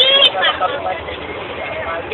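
Chatter of several young people talking over each other inside a bus, with the bus running underneath.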